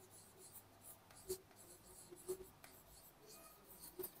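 Faint marker-pen strokes on a whiteboard, with two slightly louder strokes about a second in and just after two seconds.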